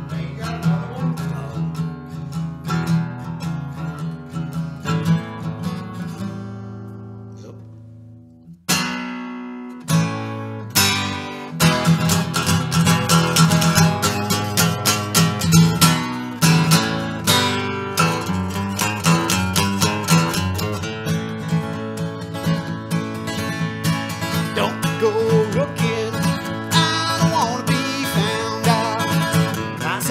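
Solo steel-string acoustic guitar playing a blues intro. Picked notes ring and die away to a short pause about eight or nine seconds in. Then a sharp strum starts it up again, and it settles into a steady, driving strummed rhythm.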